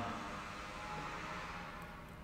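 Faint steady room tone of a large empty church with a light hiss; the echo of the last spoken word dies away at the start.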